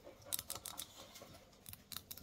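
Long fingernails clicking and tapping on a hard, hard-wearing rubber dog toy: a faint, irregular run of quick clicks.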